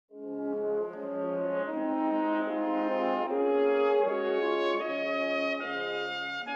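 Brass music: held chords that change every second or so, starting at once and running as a soundtrack.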